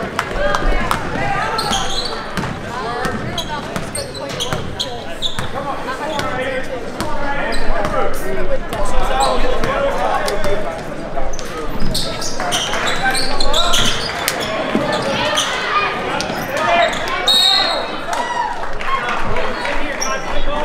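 Basketball being dribbled on a hardwood gym court, with short sharp bounces, over continuous chatter and calls from players and spectators in the gym.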